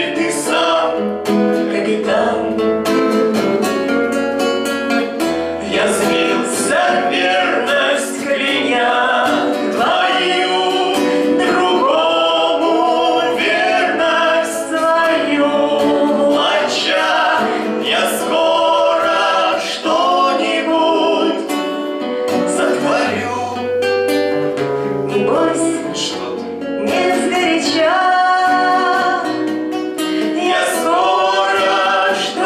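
A man and a woman singing a song together, accompanied by a classical guitar.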